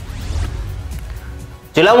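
News-bulletin transition sting: a sudden hit with a deep rumble that dies away over about a second and a half. A man's newsreading voice comes in near the end.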